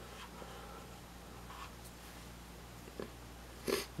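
Quiet room tone with a steady low hum, and a single faint click about three seconds in.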